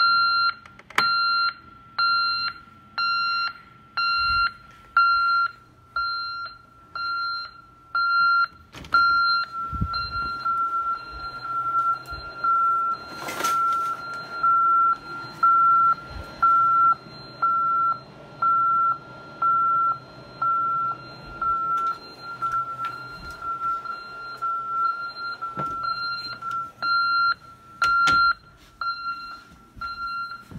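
Ademco 6160ADT alarm keypad sounding its exit-delay beeps, a short high-pitched beep about once a second: the ADT Safewatch Pro 3000 is armed away and counting down the exit delay.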